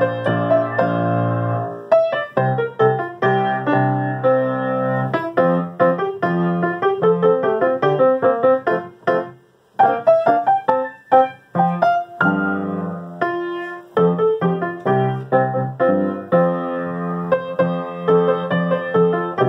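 Piano playing a song accompaniment with the vocal melody worked in, chords under a single melody line, each note struck and then dying away. The playing breaks off briefly just before halfway, then carries on.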